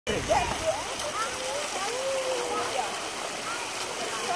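Swimming-pool water splashing and lapping as people move through it, a steady wash of noise with scattered voices calling and chattering over it.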